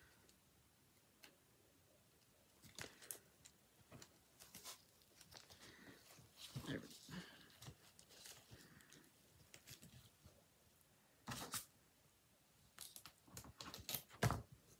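Faint rustling of ribbon and scattered small clicks and scrapes as hands work ribbon loops and wire on a bow-making board, with a louder rustle about eleven seconds in.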